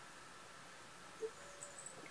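Quiet room tone with a faint steady hum and one soft, short swallow about a second in as beer is drunk from a glass.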